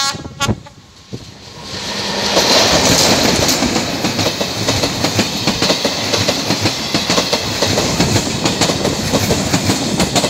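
Express passenger train passing close by, wheels clattering over the rail joints under a steady rush of noise. It swells in loudness from about two seconds in as the locomotive reaches the crossing, and stays loud as the coaches go by.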